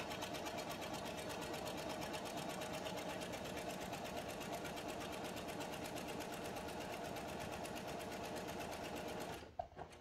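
Electric home sewing machine running steadily, its needle stitching a fine 1.6 mm stitch through layers of fabric with a fast, even rhythm. It stops abruptly about nine and a half seconds in, followed by a couple of small clicks.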